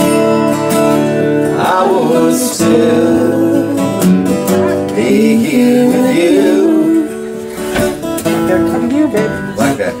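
Acoustic guitar strummed as song accompaniment, with a voice singing a melody line over it.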